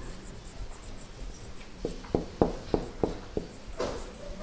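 Felt-tip marker writing on a whiteboard: after a quiet start, a quick run of short strokes and taps in the second half.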